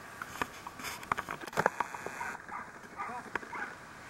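Shallow seawater splashing and lapping around a swimming dog, a quick run of sharp splashes in the first two seconds, then a few brief squeaky calls.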